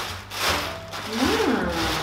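Black tissue paper rustling and crinkling as it is pulled out of a gift box, with a brief rising-and-falling pitched sound a little past halfway.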